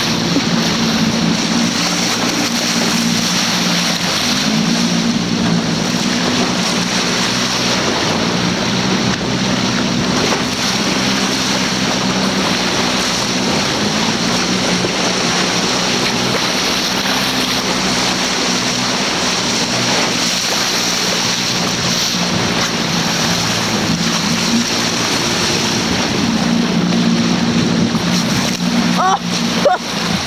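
A boat's motor running at a steady speed, its low hum shifting slightly in pitch now and then, under a constant rush of water and wind.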